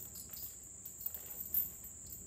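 Steady high-pitched buzz of insects in the woods, with a few faint knocks from logs being handled.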